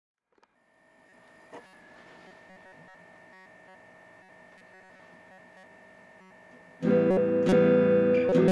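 A faint steady tone with light ticks, then, near the end, an electric guitar comes in suddenly and loudly, played in repeated strokes.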